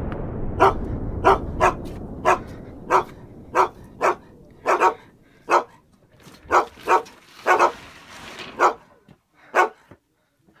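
A dog barking repeatedly, about fifteen short barks at an uneven pace of one or two a second. Under the first few barks a low rumble fades away.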